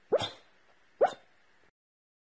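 A sleeping dog giving two short, soft woofs in its sleep, about a second apart, each rising slightly in pitch.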